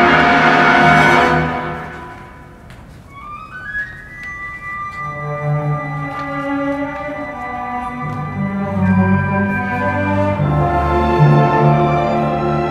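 Symphony orchestra playing. A loud full chord dies away about two seconds in, then high instruments come in one after another, and low strings join and the sound builds again near the end.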